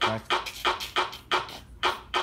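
A person making a quick run of sharp percussive beats, about four a second and slightly uneven, as a rhythmic chanted voice breaks off just after the start.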